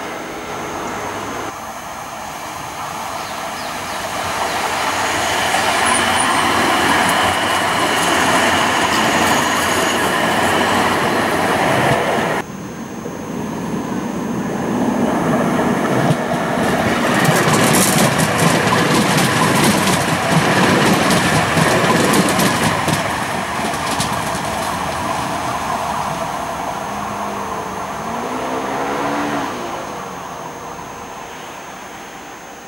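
Tram-trains of the T4 line running on the track: a loud rolling wheel-on-rail noise that builds, breaks off sharply about twelve seconds in, then builds again with a rapid clatter of wheel clicks in the middle. Near the end comes a short pitched motor whine.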